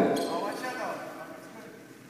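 Gymnasium hall ambience: faint, distant voices echoing in the large room, dying away toward the end.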